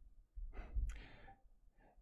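A man's soft sigh, one faint breath out lasting about a second, starting about half a second in, with a small click in the middle and a weaker breath near the end.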